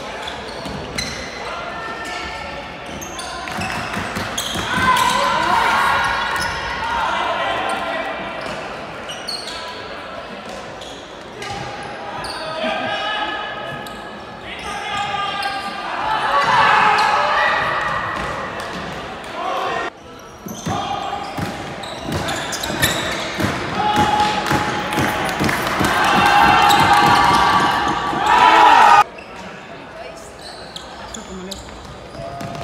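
Players' shouts and sneakers squeaking and scuffing on a hardwood sports-hall floor, echoing in the large hall, in several bursts; the sound drops off abruptly near the end.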